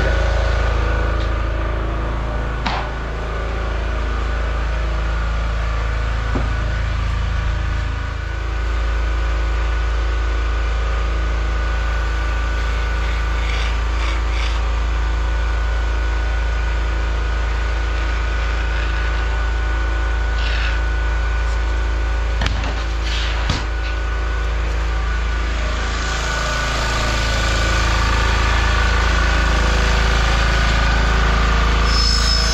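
Small portable petrol generator running steadily with a constant engine hum, growing louder near the end. A few sharp knocks sound over it.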